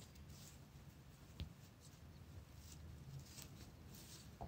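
Faint dry rustling of cat grass blades as a kitten pushes into the pot and nibbles it, with a soft click about a third of the way in, over a low room hum; near silence overall.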